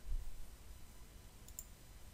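Faint clicking from a computer mouse and keyboard, with a short soft thump just after the start.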